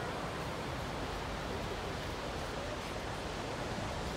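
Steady wash of ocean surf and wind at a beach: a constant noise with no single wave crash standing out.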